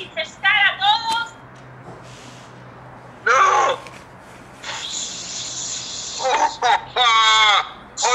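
People's voices over a video call making short wordless cries, one with its pitch sliding down about three seconds in and more near the end, over a steady high hiss that starts about halfway through.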